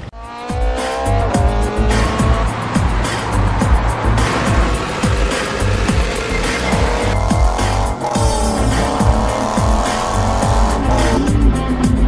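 Music with a heavy beat over a vintage racing car's engine revving hard, its pitch climbing and falling back several times as it runs up through the gears.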